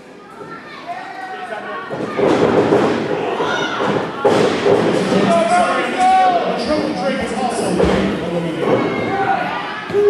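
Several heavy thuds of wrestlers' bodies hitting the canvas of a wrestling ring, over people shouting in the hall.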